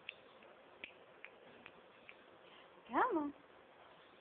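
A few faint, sharp clicks spaced roughly half a second apart, then a person saying "come on" about three seconds in.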